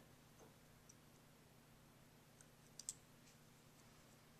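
Near silence with a few faint clicks, two of them close together about three seconds in, from pliers gripping and bending the end of a small coil spring.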